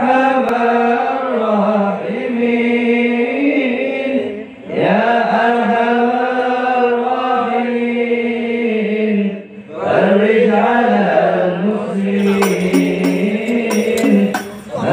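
Male voice chanting devotional singing in long, drawn-out melodic phrases, breaking briefly for breath about four and a half and nine and a half seconds in.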